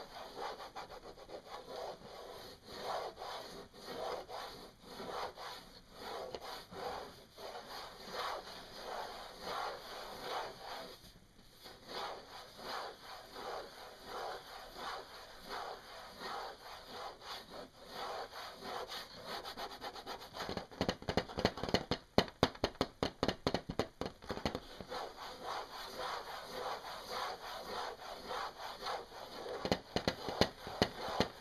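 Fingernails scratching steadily over a hard surface in quick repeated strokes, with a brief pause about a third of the way in. Near two-thirds in the strokes turn faster and louder for a few seconds, then settle back.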